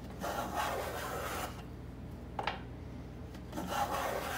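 Wooden moulding plane cutting a shaving along the chamfered edge of a board, shaping a Roman ovolo: two rasping strokes, the first a little over a second long, the second starting near the end, with a short knock between them.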